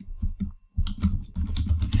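Typing on a computer keyboard: a quick run of keystrokes with a brief pause about a third of the way in.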